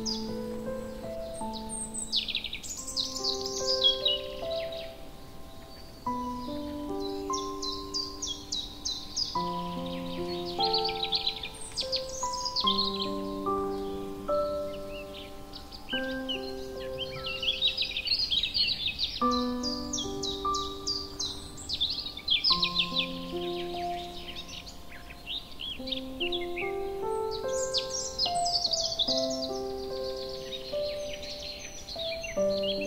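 Slow, gentle piano music of single held notes in rising phrases, overlaid with birdsong: bursts of quick high chirps and trills every few seconds.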